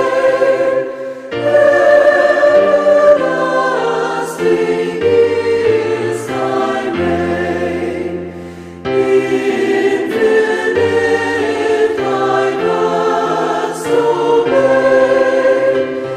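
Choir singing a hymn in held chords that change every second or two, with short breaks between phrases about a second in and about nine seconds in.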